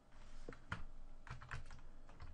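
Computer keyboard keystrokes: a quick run of about six short clicks, starting about half a second in.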